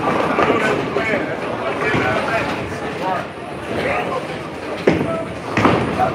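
Busy bowling alley: people talking in the background over steady crowd noise, with two sharp knocks near the end.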